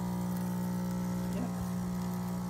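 Home espresso machine's pump running with a steady buzzing hum while espresso pours into the cup below the portafilter.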